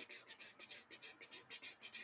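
Faint typing on a computer keyboard: a quick, uneven run of light key clicks, about six a second, stopping near the end.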